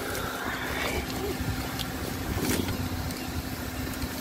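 Car engine running at low speed as the car edges forward, heard from inside the cabin with the driver's window down: a steady low hum with a short click about halfway through.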